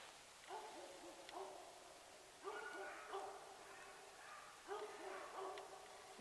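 Distant hunting hounds baying, faint, in four bursts of short overlapping calls a couple of seconds apart.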